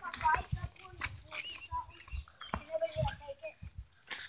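Faint voices talking some way off, broken up, with scattered soft low thumps.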